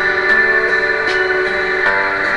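Instrumental backing music of the song between sung lines: held chords, with a few soft notes struck over them about once a second.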